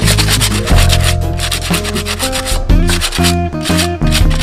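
Sandpaper rubbing quickly back and forth over the rough edge of a freshly cast cement pot, a fast run of scratchy strokes, over background music.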